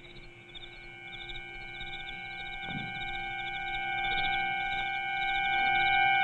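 Background score music: a sustained chord of high, steady tones that slowly grows louder.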